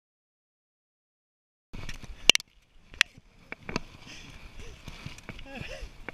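Dead silence for nearly two seconds, then the noise of a bicycle rolling on a paved trail: a steady hiss with three sharp clicks and knocks about a second apart from the bike. A person starts to laugh near the end.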